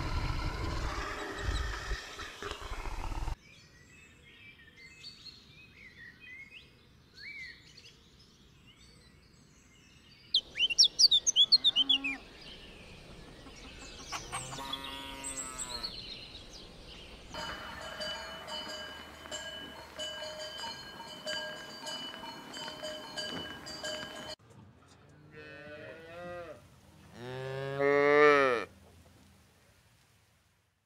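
Cattle mooing: a few shorter calls, then one long low moo near the end, the loudest sound here. Before it come other, shorter animal sounds, including a quick burst of high chirping about a third of the way in.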